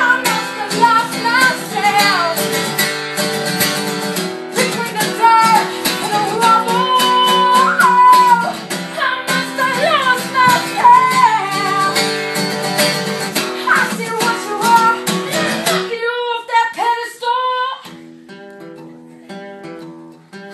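A woman singing while strumming an acoustic guitar. About sixteen seconds in her voice stops and the guitar plays on more quietly.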